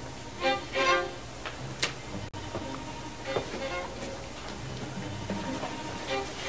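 Background score music: a violin melody over a held low string note.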